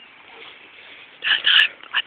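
A dog giving two short, high-pitched yelps a little over a second in.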